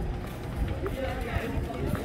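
Indistinct voices of people talking as they walk, over low, uneven noise from walking and the handheld camera.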